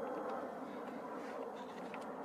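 A steady low hum, with a few faint clicks in the second half.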